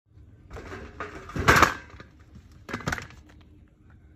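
Clattering and rustling on an aluminium tray as sliced fruit and vegetables are tipped onto it, in two bursts: a longer one peaking about one and a half seconds in, and a shorter one near three seconds.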